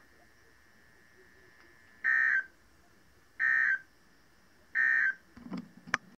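Weather radio's speaker sending the Emergency Alert System end-of-message code: three short, identical, buzzy digital data bursts, each about a third of a second long and about a second and a half apart, marking the end of the test alert. A brief low rumble and a sharp click follow near the end.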